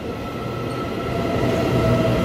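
Taiwan Railways electric multiple-unit commuter train running along an underground station platform, a steady rumble that grows gradually louder, with a thin steady whine setting in under a second in.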